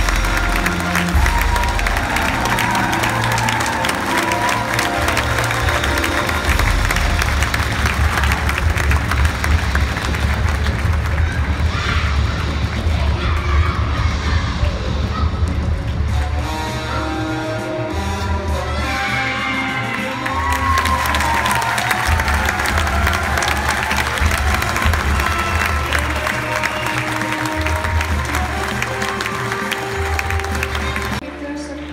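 Theatre audience clapping and cheering, with loud music playing throughout.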